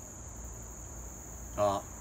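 Steady, unbroken high-pitched drone of an insect chorus.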